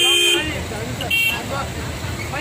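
A vehicle horn sounding in queued traffic, its long blast cutting off about a third of a second in, then a second short toot about a second in. Under it, idling engine noise and voices.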